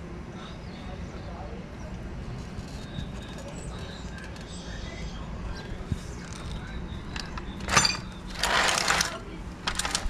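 A hex driver working a small screw into an RC go-kart's steering linkage, with a few faint ticks, followed near the end by a sharp loud crack and a short loud scraping rustle.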